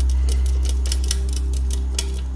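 Rapid, irregular sharp clicks as a sun conure nestling scrabbles at the clear plastic wall of its box, over a loud, steady low hum.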